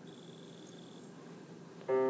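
A thin, high, steady beep lasting about a second, then near the end the intro of a recorded song starts from a small speaker dock with a sustained chord of several held notes, much louder than what came before.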